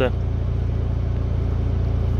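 Steady low rumble of wind buffeting the microphone, unbroken and even in level.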